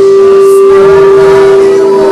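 Church worship music: a single note held loud and steady throughout, with voices singing wavering lines over it.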